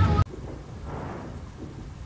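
The tail of speech over music cuts off abruptly a quarter second in, leaving a steady, much quieter low rumbling noise with a faint swell about a second in.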